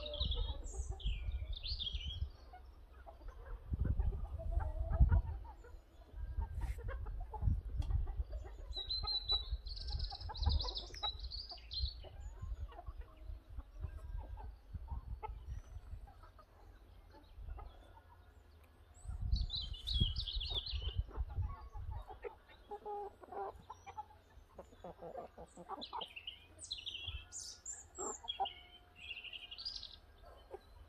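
Birds calling outdoors: clusters of short high chirps that come and go, with clucking like domestic fowl, over bursts of low rumble.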